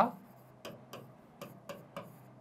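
Marker pen writing on a whiteboard: several short, sharp ticks as the tip strikes the board with each stroke.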